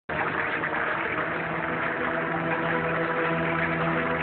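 A steady rushing noise with several held low tones beneath it, from an animated cartoon's soundtrack. It starts abruptly just after the opening and holds level throughout.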